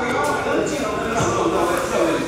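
Indistinct voices, too unclear to make out words.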